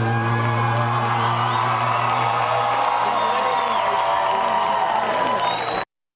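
A deep male voice holds a low final note at the end of a live acoustic country song, fading after about three seconds. Meanwhile the crowd cheers and whoops throughout. The sound cuts off abruptly just before the end.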